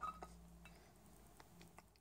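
Near silence: room tone with a low hum and a few faint ticks of a relay module and its wires being handled.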